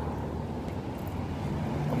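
Low, steady outdoor rumble of distant street traffic, with some wind on the handheld phone's microphone.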